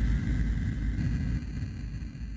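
Low, steady rumble with a faint high held tone: a quiet drone passage of the video's background music.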